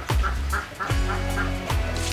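Domestic poultry calling in the yard, a quick run of short calls in the first second, over background music.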